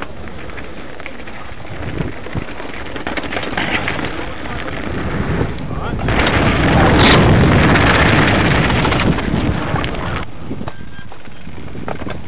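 A mountain bike rolling fast over a gravel forest trail: tyres crunching on the loose stones and the bike rattling with small clicks, and wind rushing over the microphone. The noise builds to its loudest in the middle as the bike picks up speed, then eases off near the end.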